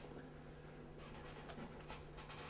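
Quiet room tone with a steady low hum; about a second in a faint breathy hiss begins, like a person breathing out.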